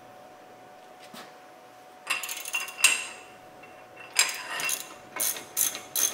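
Socket ratchet clicking in three short runs, starting about two seconds in, as the just-loosened 15 mm brake caliper bracket bolt is backed out.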